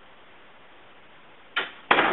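Two sudden loud noises near the end, a short one and then a louder one that trails off, over a steady hiss.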